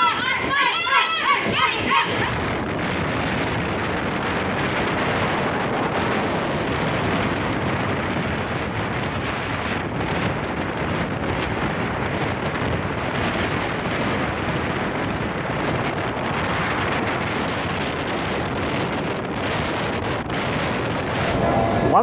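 Steady rushing noise of a moving passenger train heard from an open coach window, with wind blowing on the microphone over the running of the coaches on the rails. Children shout in the first two seconds.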